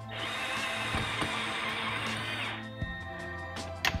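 Cordless drill with a hex bit driving in the bolt that mounts the slipfitter knuckle, running for about two and a half seconds and then stopping.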